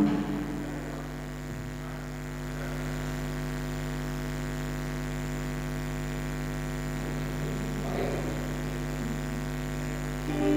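Steady electrical mains hum with a low buzz of many overtones from the band's guitar amplifiers and PA system, left switched on while nobody plays.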